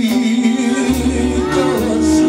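Live band music with a singer holding long, wavering notes over a keyboard accompaniment.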